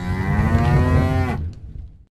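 A cow mooing: one long, low call that fades out about a second and a half in.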